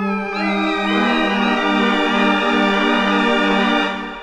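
FRMS granular synthesizer patch built from a kitten's meow sample, playing a sustained organ-like chord. A low note pulses about twice a second beneath it, and small upward pitch bends run through the upper tones as notes enter.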